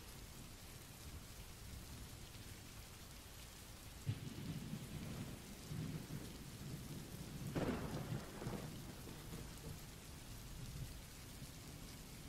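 Rain sound effect: faint steady rainfall, with a low rumble of thunder that starts about four seconds in, swells around the middle and dies away.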